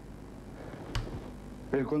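A single sharp knock about a second in, over a low steady hum, then a man's voice begins near the end.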